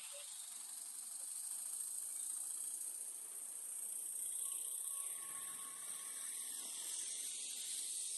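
Steady high-pitched hiss over a faint background haze, with no distinct events.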